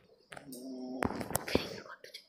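A steel ladle knocking against the side of a steel wok while stirring sugar syrup: three sharp clicks in the second half.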